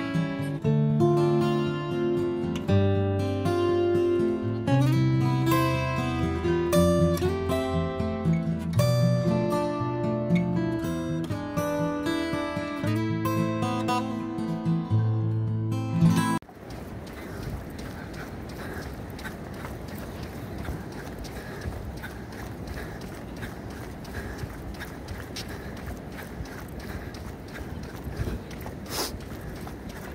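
Acoustic guitar music, strummed, which cuts off abruptly about halfway through, leaving steady outdoor background noise.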